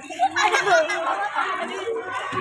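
Many children's voices chattering at once, overlapping so that no single speaker stands out.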